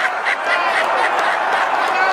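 Ballpark crowd noise: a large crowd cheering, shouting and laughing, with single voices yelling above the steady roar.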